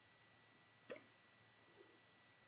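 Near silence with a faint steady high tone behind it, broken about a second in by one short soft pop of the lips as they come off a cigar after a draw.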